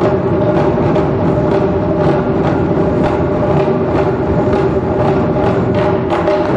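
Japanese taiko drum ensemble playing a fast, continuous rhythm, large barrel drums and small high-pitched shime-daiko struck together, with a steady held note underneath.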